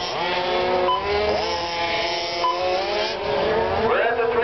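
Several radio-controlled Formula 1 race cars' motors whining together, the pitch rising and falling as they accelerate and brake.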